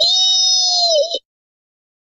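A high-pitched synthesized cartoon voice holding one long steady note, which dips slightly and cuts off about a second in.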